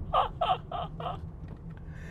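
A man laughing, five short "ha" bursts in quick succession in the first half, over the steady low hum of road and engine noise inside a moving car's cabin.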